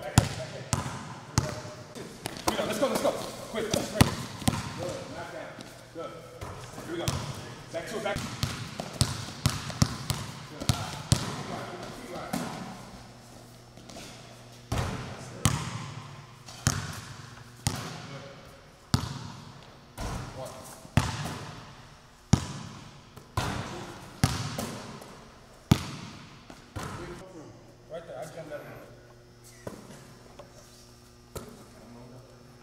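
Basketball bouncing on a gym floor: sharp bounces, about one a second through the second half, each echoing around the large hall. Indistinct voices are heard in the first half.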